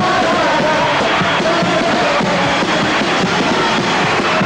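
A chirigota carnival group playing its closing instrumental music live: a wavering lead melody over a steady beat on the bass drum (bombo).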